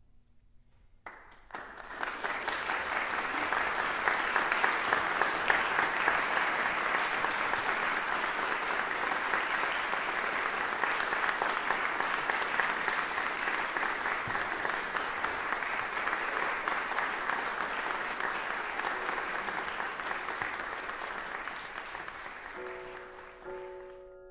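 Audience applauding in a concert hall. The applause starts suddenly about a second in and runs dense and even, then fades near the end.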